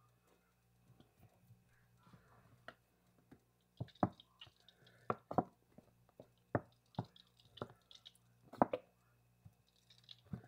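Plastic squeeze bottle of ketchup squeezed over rice in a skillet, giving a run of short, sharp squelching spurts at irregular spacing that start about four seconds in and die away near the end.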